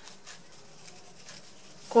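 Faint rustling and soft scraping of fabric ribbon loops handled and pressed together between fingers.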